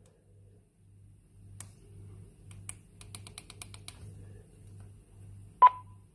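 Button clicks on an AnyTone handheld DMR radio's keypad as a disconnect code is keyed in: a few scattered clicks, then a quick run of about ten in the middle. Near the end comes a short beep, the loudest sound, under a faint pulsing low hum.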